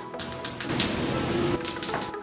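Long painted fingernails tapping on a perfume bottle: a few quick clicks at the start and again near the end, with a soft hiss in between.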